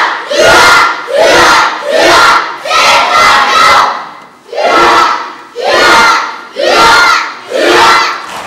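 A large group of taekwondo students shouting together in unison as they drill techniques, about ten short, sharp shouts in a steady rhythm with a brief pause about halfway through.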